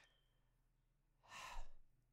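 Near silence, then about a second in a man's single audible breath, an airy intake lasting under a second, taken during a pause in talk.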